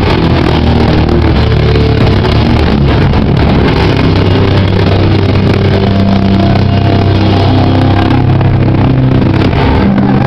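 Live metallic crust punk band playing loud, heavily distorted guitars, bass and drums in one continuous wall of sound, so loud it overloads the camera's microphone; the low chords shift a few times.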